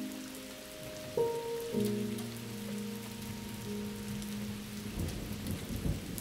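Steady rain falling into a puddle and onto wet leaves, under sustained music chords that change about a second in. A low rumble swells briefly near the end.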